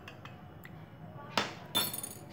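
Two sharp clinks of kitchen utensils about a third of a second apart near the end, the second ringing brightly, after a quiet start.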